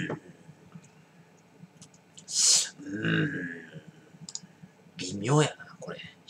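A man tasting beer: small mouth clicks and lip smacks, a loud breath about two seconds in, then short murmured vocal sounds, one just after the breath and one near the end.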